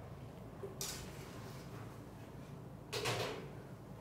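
A metal spoon scraping and tapping an aluminium frying pan as the fried insect mixture is spooned onto bruschetta, with a soft scrape about a second in and a louder, short clatter near the end. A steady low hum runs underneath.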